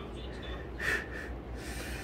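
A short, breathy snort about a second in, then a fainter hiss of breath near the end, over a steady low hum.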